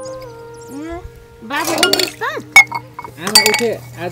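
Stainless steel dishes, a cup and a plate, clinking against each other as they are washed and handled. There are a few sharp clinks, and the loudest comes about two and a half seconds in.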